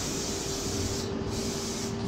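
Aerosol spray can hissing as it sprays, with a short break about a second in. A steady low hum runs underneath.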